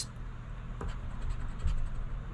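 A coin scraping the coating off a scratch-off lottery ticket in short, repeated strokes.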